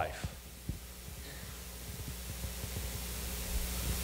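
Quiet room tone: a steady low electrical hum with faint hiss, and a couple of faint knocks in the first second.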